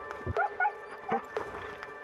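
Huskies giving several short, rising yips and whines over background music.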